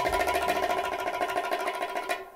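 Organ holding a chord with a fast, even pulse, in a break of a 1960s instrumental soul record with the bass and drums dropped out.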